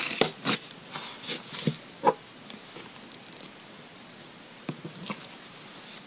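Short scrapes and clicks of a scraper dragged across a metal nail stamping plate to clear off the polish, mostly in the first two seconds, then a few light clicks near the end.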